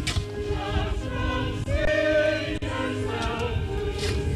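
A group of voices singing a slow hymn, with long held notes. A brief sharp scrape or knock sounds at the very start.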